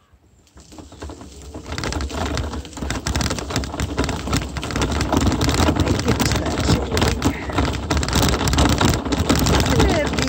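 Wheels rolling over a dirt and gravel road: a dense, crackling crunch with a low rumble underneath, building up over the first two seconds as it gets moving and then holding steady.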